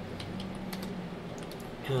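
Light clicks of computer keys being tapped, a scattered run of them in the pause between words.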